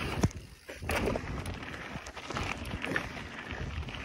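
Mountain bike riding fast down a dirt trail: tyre rumble and bike rattle mixed with wind on the microphone. A sharp knock comes just after the start, followed by a brief lull before the rolling noise picks up again.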